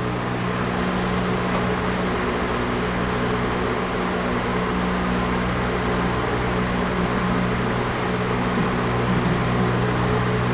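Steady low machine hum of room tone, a drone with a few steady low pitches and no other events.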